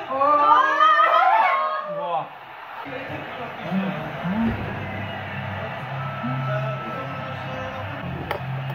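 A voice calls out in long rising and falling cries for about two seconds, then gives way to quieter background music.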